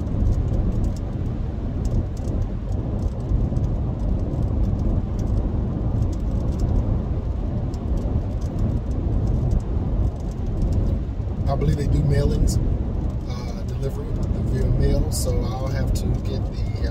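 Steady low road and engine rumble inside the cabin of a moving car. A man's voice comes in briefly in the last few seconds.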